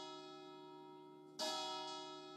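Church bell tolling: a stroke rings out and fades, and the bell is struck again about one and a half seconds in.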